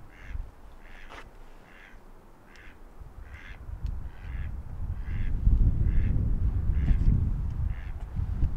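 A duck quacking over and over, short calls about one a second. Underneath, wind buffets the microphone with a low rumble that grows louder from about halfway.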